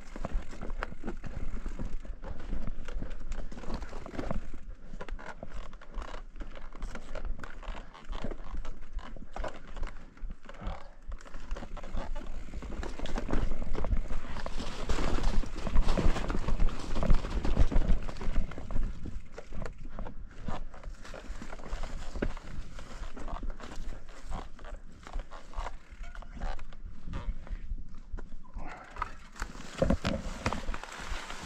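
A mountain bike ridden over a rough, rocky trail covered in dry leaves: tyres crunching through the leaves and over rock, with the bike rattling and knocking over the bumps. The noise grows louder and busier about halfway through.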